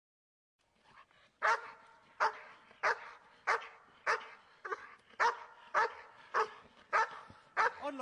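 Young German Shepherd barking at a steady pace, about one and a half barks a second, starting about a second and a half in, as it is agitated by a protection-work helper.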